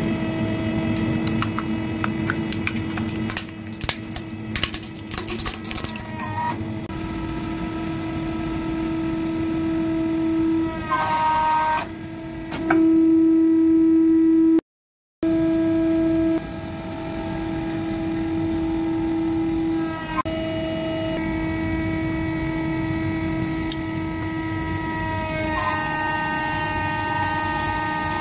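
Hydraulic press running with a steady, pitched motor-and-pump whine. About three to six seconds in, a rapid run of sharp cracks and snaps sounds as a plastic toy gives way under the ram. The whine grows louder, cuts out briefly halfway through, then carries on with its pitch shifting near the end.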